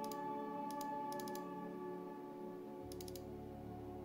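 Clusters of two to four quick computer mouse clicks, over soft steady background music.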